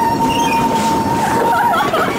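A girl's long, high "woooo" call that slides up and is then held on one pitch for about a second and a half, before breaking into wavering voices near the end. Underneath runs a steady rumble and clatter from a mine tour train moving through the tunnel.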